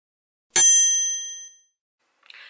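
A single bright, bell-like ding sound effect, struck about half a second in and ringing out over about a second: the chime of an on-screen subscribe reminder.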